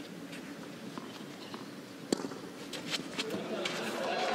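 A tennis ball is struck by a racket: one sharp pop about two seconds in, with a few fainter clicks around it, over low court ambience.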